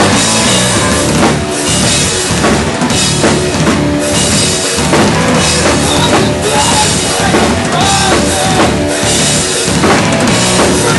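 Live rock band playing loud: distorted electric guitar and bass held over a drum kit with steady bass-drum, snare and cymbal hits.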